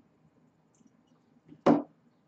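A single short, sharp knock about one and a half seconds in: needle-nose pliers put down on the work mat.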